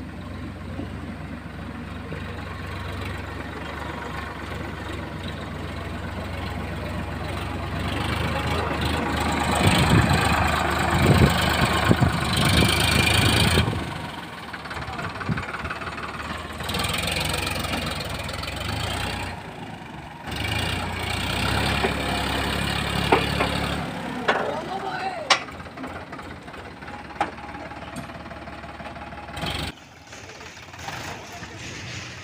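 Sonalika DI 740 III tractor's diesel engine running under load as it hauls a trolley heaped with earth through mud, growing louder and harsher about eight seconds in and dropping back a few seconds later. A few sharp knocks come near the end.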